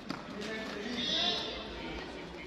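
Voices of a large group of people chattering and calling out in a big sports hall, with a high, drawn-out call about a second in and a short knock just after the start.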